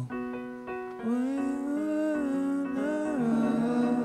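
A man singing a wordless "ooh" melody to his own grand piano chords. The piano chords sound from the start, and from about a second in the voice holds long notes that slide up and down in pitch.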